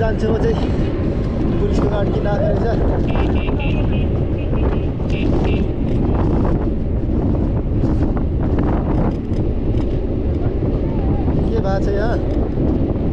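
Wind buffeting the microphone of a camera riding at speed: a dense, rough rumble throughout, with snatches of voices breaking through now and then.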